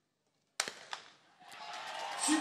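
Starter's pistol fired for a 100 m sprint start: one sharp crack about half a second in, after a hushed silence. Crowd noise starts to rise about a second later as the runners go.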